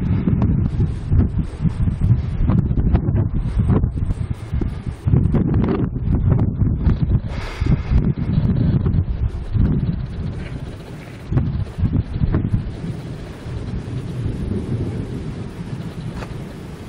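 Strong, gusty wind buffeting the microphone in a rough low rumble, the gust front of an approaching thunderstorm; the gusts ease somewhat in the second half.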